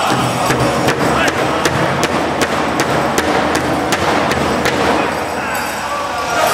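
Powwow drum struck in a steady beat, about two and a half beats a second, at the end of an honor song; the singers' voices trail off at the start and the drumming stops about five seconds in.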